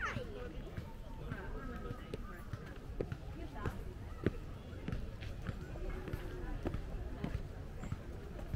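Footsteps on concrete steps, sharp steps coming about every half second to second from around three seconds in, under people's voices talking in the background.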